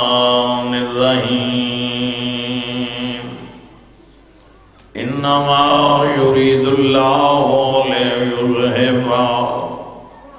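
A man chanting a Quranic verse in Arabic in a long, melodic recitation voice: one drawn-out phrase, a pause of about a second and a half, then a second long phrase that fades out near the end.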